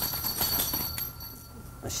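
A small bell on a dog's collar ringing as the blind dog moves, a clear high metallic ring that fades away near the end.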